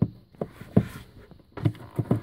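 A handful of short, sharp clicks and knocks as a rear ultrasonic parking-assist (URPA) sensor is worked loose by hand from its retaining clips in the bumper.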